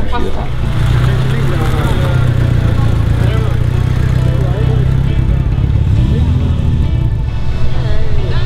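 Engine of a classic convertible sports car running steadily at low speed, a deep even hum, with voices and background music over it.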